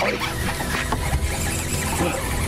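Baitcasting reel's drag buzzing with a high-pitched whine as a hooked musky pulls line off against it, over a low steady rumble.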